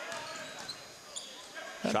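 Basketball being dribbled on a hardwood court in a large gym, over a low murmur of crowd voices.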